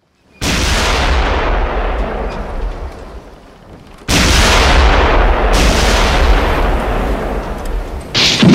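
Battle sound effect of gunfire and artillery explosions. It starts suddenly about half a second in and fades away over about three seconds, then a second, louder barrage begins at about four seconds and keeps on.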